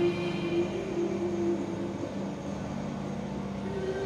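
Slow music of long held notes and chords over a low steady drone, the notes shifting about a second in and again near two seconds.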